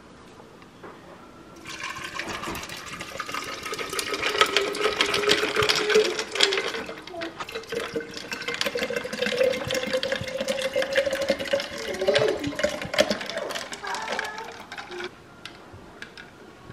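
Water pouring steadily into a glass pitcher for about thirteen seconds, starting near the beginning and stopping shortly before the end. The pitch of the filling rises slowly as the pitcher fills.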